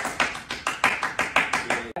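Hands clapping in a quick, even rhythm, about six claps a second, with the run of claps stopping suddenly near the end.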